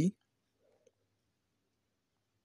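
The last word of a man's narration ends right at the start, then near silence with a single faint click just under a second in.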